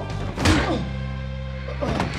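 Film fight sound effects: a heavy punch impact about half a second in and a second, lighter hit near the end, over a low, steady music score.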